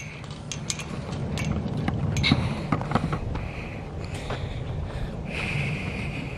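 A metal garden gate being unlatched and swung open, with a run of clicks, knocks and rattles, then footsteps on dry garden soil.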